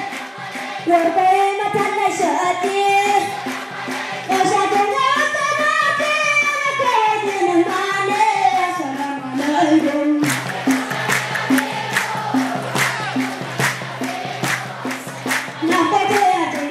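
Group singing a devotional Mawlid song with hand clapping in time. About ten seconds in, the clapping becomes a louder, steady beat under the singing.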